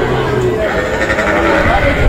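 A calf bawling: one long, drawn-out call, over people's voices close by.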